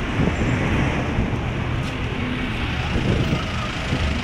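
Steady road traffic noise, a low rumble of car engines running nearby.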